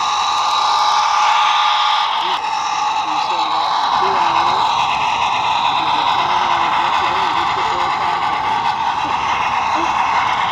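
Model steam locomotive and freight cars running past close to the microphone: a steady whirring hiss of motor and wheels on the rails, with a faint whine in it.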